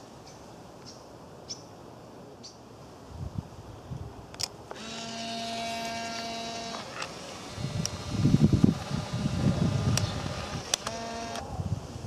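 Fujifilm instax mini 90 instant camera: a sharp shutter click, then its motor whirring steadily for about two seconds as it drives the print out, with a second short whir of the same pitch near the end. Loud rustling from handling and wind on the microphone fills the gap between the two whirs.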